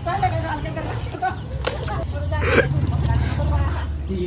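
People talking and calling out, with a short loud cry about two and a half seconds in.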